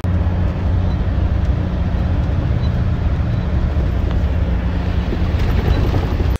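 Moving coach bus heard from inside the cabin: a steady low drone of engine and road noise.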